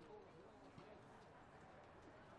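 Near silence with faint, distant voices of people on a football pitch.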